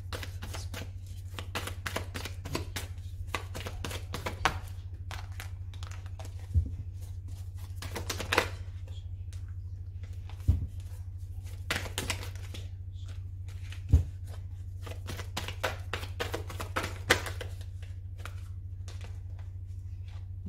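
A deck of tarot/oracle cards being shuffled by hand over and over, the cards flicking and rustling against each other in an irregular patter with a few sharper knocks, until a card drops out of the deck. A steady low hum runs underneath.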